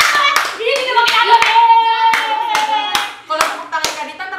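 A few people clapping their hands: sharp, irregular claps, about three or four a second, going on throughout.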